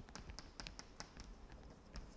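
Chalk writing on a blackboard: a quick, irregular run of faint taps and short scratches as the chalk strikes and drags across the board.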